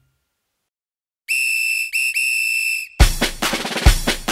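After about a second of silence, a whistle sounds in three blasts, a short one, a very short one and a longer one. About three seconds in, loud hand-drum music begins with a fast beat.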